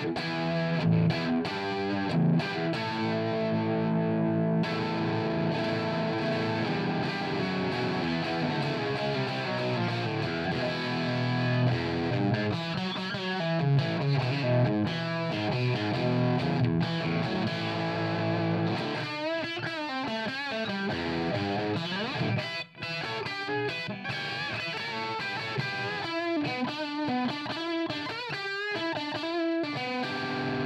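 Electric guitar, a Telecaster on its bridge pickup, played through the Audio Kitchen Little Chopper hand-wired EL84 valve amp into a Marshall 4x12 cabinet, with an overdriven valve crunch. Held chords ring for the first dozen seconds, then come lead lines with bent, wavering notes.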